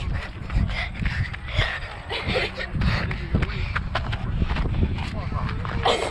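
Rumble of wind on the microphone and handling noise from a moving handheld camera, with irregular knocks and faint voices in the background.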